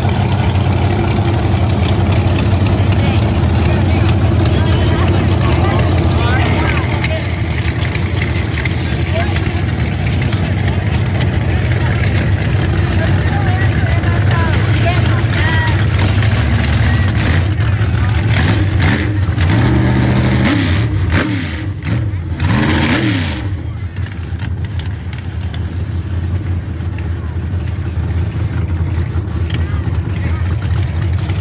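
Small-tire drag race cars' engines running loudly at the start line with a steady deep rumble. About two-thirds of the way through, the engines rev up and down several times.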